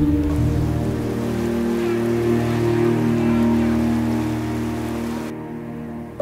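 Slow background music of long held notes, with the steady hiss of falling rain laid over it that cuts off suddenly about five seconds in.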